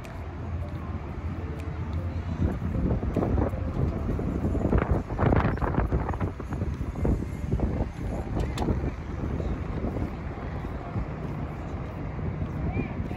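Outdoor street ambience: a steady low hum of road traffic, with passers-by talking around the middle and wind on the microphone.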